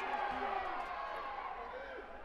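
Arena crowd: a steady hum of many voices with a few faint, distant shouts, easing off slightly toward the end.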